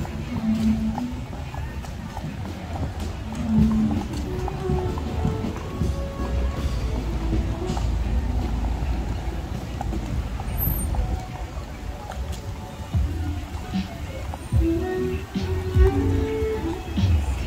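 Busy street ambience: a steady low rumble of traffic, with scattered snatches of people's voices and music.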